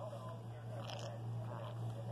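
Green-cheeked conure play-biting and nibbling at a finger: small scratchy beak sounds, with a short high squeak about a second in.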